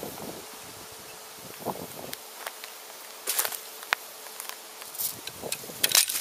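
Insects buzzing in a faint steady hum, with scattered light crackles and clicks, a cluster about three seconds in and more near the end.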